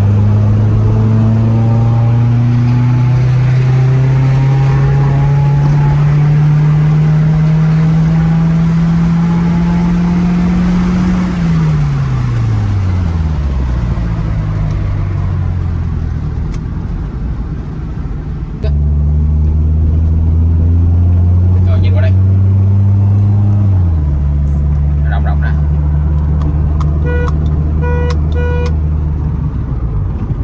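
A Toyota Celica's 1.8-litre four-cylinder engine heard from inside the cabin while driving. The revs climb steadily for about eleven seconds, then fall away quickly. After a sudden change it runs at steady revs, steps down to a lower note a little before the end, and a short run of evenly spaced beeps sounds near the end.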